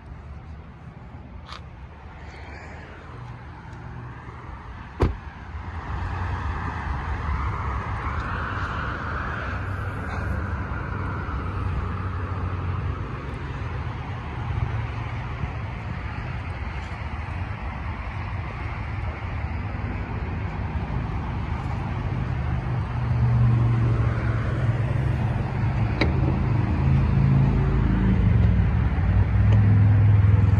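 A single sharp thump about five seconds in, then steady road-traffic noise with a low rumble. A passing vehicle rises and fades from about seven to thirteen seconds, and the rumble grows louder near the end.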